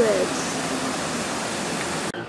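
Water falling in a wide sheet over a fountain ledge into its basin: a steady rush of splashing water.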